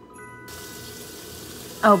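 Kitchen tap running in a steady hiss, starting about half a second in, under faint background music holding a few steady notes.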